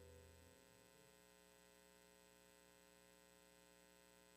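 Near silence: a faint steady hum, with the last notes of the outro music dying away in the first half second.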